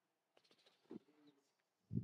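Near silence: room tone in a pause, with a faint short hum about a second in.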